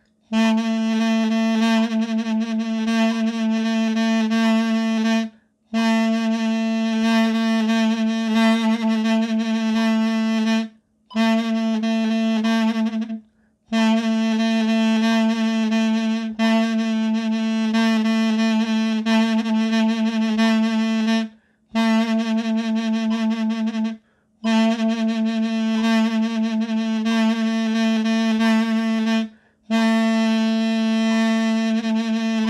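Mey, the Turkish double-reed wind instrument, playing a vibrato study: one low note repeated and held, the notes shaken with vibrato, in phrases of a few seconds broken by six short pauses for breath.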